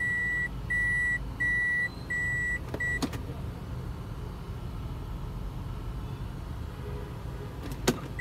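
Reverse-gear warning beeps inside a Toyota Corolla Altis: a high beep repeating about every 0.7 seconds. It stops with a click about three seconds in, when the automatic shifter leaves reverse. A low steady engine hum from the car idling lies under it.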